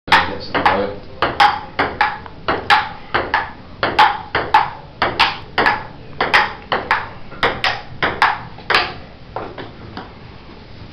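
Table tennis rally: the ball clicking off the table and the paddles in quick alternation, about two or three hits a second, until the rally stops shortly before the end.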